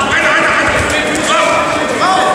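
Many voices shouting at once in a large hall: spectators in the stands calling out during a judo bout, with a few dull thumps underneath.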